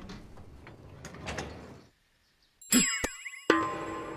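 Soft rustling for about two seconds, then a brief gap. Then a sudden cartoon sound effect with quickly falling pitch, a click, and a sharp musical chord struck near the end.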